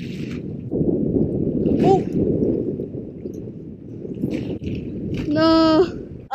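Wind buffeting a head-mounted camera's microphone, a steady low rumble with a few short rustles. Near the end, a man's drawn-out vocal exclamation on one held pitch.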